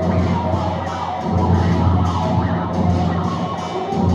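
Electric guitar played through a small amplifier in a free, abstract sound improvisation: a loud sustained low drone with a dense, noisy upper texture, which breaks off briefly about a second in and then resumes.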